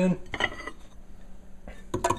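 Frozen fruit pieces tipped into a Ninja blender pitcher, with a short clatter of chunks and a clink against the pitcher about half a second in, then quieter rattling.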